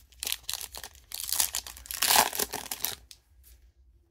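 Foil wrapper of a Panini Prizm football card pack crinkling and tearing open as it is ripped by hand: a run of crackles for about three seconds that stops shortly before the end.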